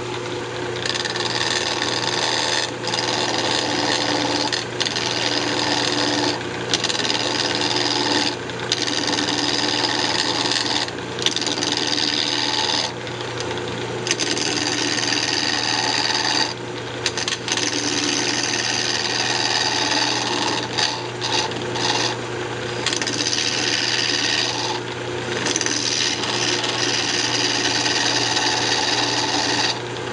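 Wood lathe running while a gouge cuts a spinning cocobolo blank to true it up: a steady motor hum under a scraping, hissing cut that breaks off for a moment every couple of seconds as the tool lifts away.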